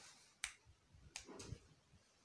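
Near silence broken by a few faint, sharp computer mouse clicks, the first about half a second in and the others just past a second.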